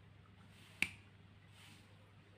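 A single sharp click about a second in as a round 12V illuminated rocker switch is pressed off.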